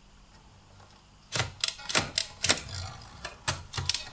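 Manual typewriter keys striking, an irregular run of about ten sharp clacks starting a little over a second in.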